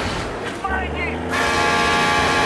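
An old truck's horn sounding one long steady chord from just over a second in, over a deep engine rumble, with a brief voice just before the horn.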